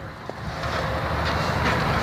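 A low, steady outdoor rumble that builds up about half a second in and then holds.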